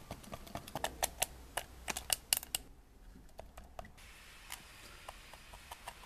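Single-edge razor blade chopping the heads off matchsticks against a glass mirror: a quick, irregular run of sharp clicks of the blade on the glass. The clicks thin out to a few scattered ticks after about two and a half seconds.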